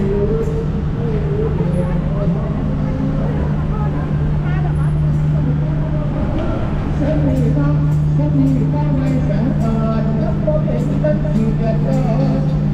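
Road traffic noise: a steady low engine hum from a jam of cars and buses, with people's voices talking nearby over it.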